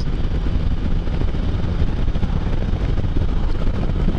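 Can-Am Spyder three-wheeled motorcycle cruising at steady speed, heard from the rider's seat: a constant low drone of engine and road with wind rushing over the microphone.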